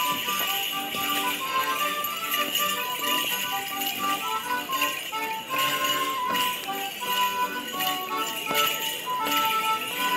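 A live tune for a Cotswold morris dance in the Fieldtown tradition, a melody of short notes, with the jingling of the dancers' leg bells in time with their stepping and leaping.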